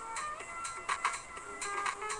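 Music playing, with held pitched notes and a regular percussive beat.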